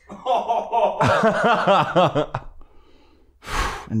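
Men laughing into close microphones: a run of quick, evenly repeated laughter pulses lasting about two seconds, then a short, loud breath near the end.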